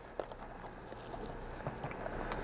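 Faint rustling and crumbling of old peat-and-perlite potting mix as fingers gently tease it out of an orchid's root ball, with a few small ticks.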